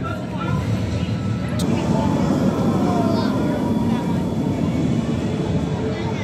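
Mandrill Mayhem roller coaster train running along its steel track, a rumble that swells through the middle and eases near the end.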